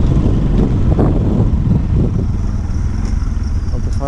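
Motorcycle engine running while riding a rough dirt track, with steady wind rumble on the microphone and a few jolts from bumps in the first couple of seconds.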